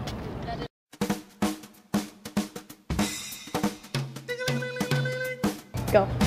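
Background music starts after a sudden cut to silence: a drum-kit beat of sharp snare-like hits, with held instrument tones joining about four seconds in.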